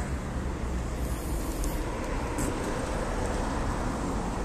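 Steady city street traffic noise: cars passing on the road, with a low rumble.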